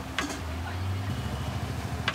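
Low, steady engine hum of street traffic, with a single short click just after the start.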